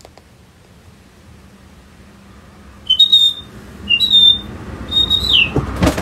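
Three high whistled, bird-like calls about a second apart, each a short lower note stepping up into a held higher note, the last one falling away at its end. They follow a few seconds of quiet room tone, and there is a thump near the end.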